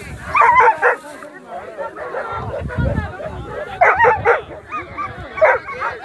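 Dogs barking and yipping in short, excited bursts: a cluster about half a second in, another around four seconds in, and a single one near the end.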